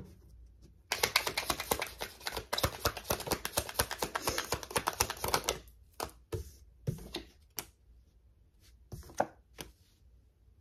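A deck of tarot cards being shuffled by hand: a dense run of rapid card clicks starting about a second in and lasting about four and a half seconds, then a few separate snaps and taps as the cards are handled.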